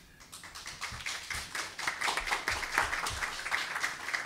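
A small group of people applauding, the clapping starting sparse and growing fuller about two seconds in.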